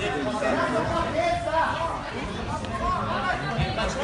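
Chatter of several people talking at once in a large hall, with no clear words.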